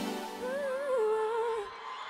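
A single voice humming a short, wavering tune for about a second, starting about half a second in. It follows the last of the band's music dying away at the start.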